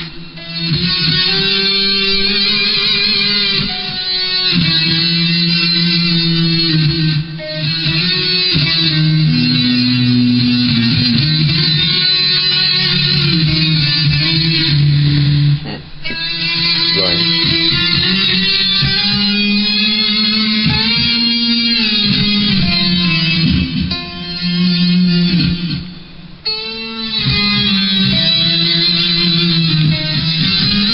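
Electric guitar played solo: held notes and melodic phrases with short breaks between them, the longest near the middle and a little before the end.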